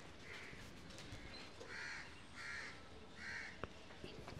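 A crow cawing four times, the first call faint and the last three louder and close together, with a single sharp click near the end.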